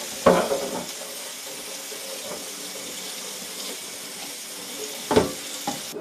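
Tap water running steadily onto a soapy carbon steel wok in a stainless steel sink as the soap is rinsed off, with two brief louder sounds, one just after the start and one near the end.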